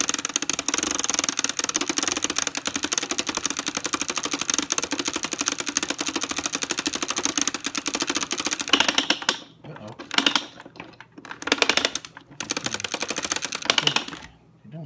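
Hand-cranked 1973 Kenner cassette movie projector running film, its crank mechanism clattering in a fast, even stream of clicks. About nine seconds in, the clicking breaks into short bursts with pauses between them as the cranking stops and starts.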